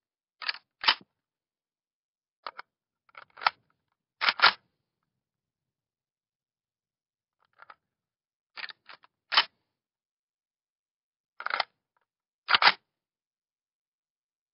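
Uzi submachine gun magazine being clipped in and pulled out: several groups of two or three sharp metal clicks and clacks, a few seconds apart, with dead silence between.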